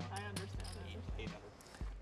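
A few light clicks of poker chips being handled, over faint low voices and a steady low hum.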